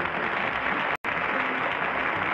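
Studio audience applauding steadily, with a momentary break about a second in.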